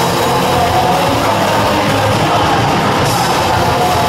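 Live rock band playing loud: electric guitar, bass guitar and drums together.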